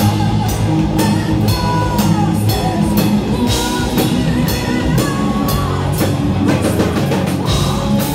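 Heavy metal band playing live: distorted electric guitars over drums, with cymbal hits about twice a second and a pitched melody line bending on top.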